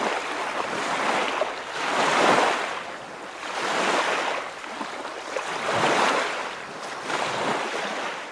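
River water rushing and sloshing against a floating inner tube, close to the microphone, swelling and fading roughly every two seconds.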